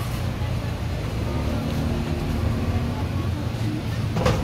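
Indoor market ambience while walking: a steady low rumble with indistinct background voices.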